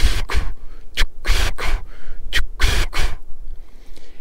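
A man blowing voiceless breath puffs in the cadence of the word "Chicago", three times over, each a short puff then a longer one. This is the exhale pressure and rhythm meant to be blown into a California (valley) quail call.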